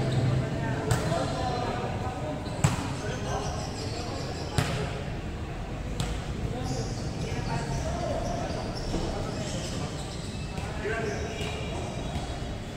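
A volleyball being struck and hitting the hard court of a large gym hall: four sharp smacks over the first six seconds, the second the loudest. Players' voices call out around them.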